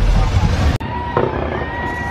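Outdoor street noise with wind rumble on the microphone, cut off abruptly under a second in. Then fireworks: a long whistling tone with a short pop about a second in.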